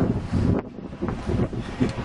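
Wind buffeting the camera's microphone outdoors, a low, uneven rumble in gusts that eases off briefly from about half a second to a second in.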